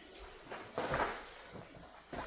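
Paper pages being turned and rustling, with the loudest rustle about a second in.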